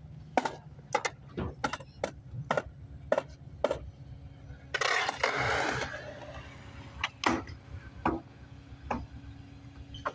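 Skateboard rolling on concrete, its wheels clacking over pavement seams about twice a second, with a louder stretch of rolling noise about halfway and a few more clacks near the end. A steady low hum runs underneath.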